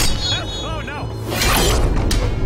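A sharp crash of a blade striking the table, followed by a short voiced cry and a swishing sound about a second and a half in, over dramatic background music.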